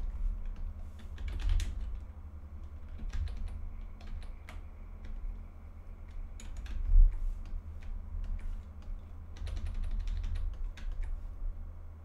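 Computer keyboard keys clicking in irregular single presses and short flurries, with a dull thump about seven seconds in, over a steady low hum.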